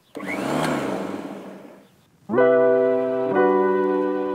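An electric lawn mower's motor switching on with a rising whir, then dying away over about a second and a half. About two seconds in, keyboard music starts with steady held chords.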